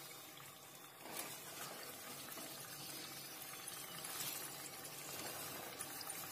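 Potato fries frying in hot oil in a pan: a faint, steady sizzle that grows a little louder about a second in.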